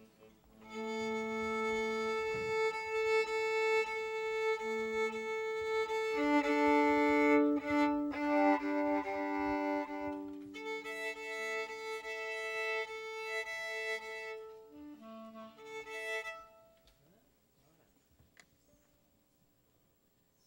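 Violin, clarinet and accordion playing long held notes together, the pitches shifting a few times, then stopping about 16 seconds in.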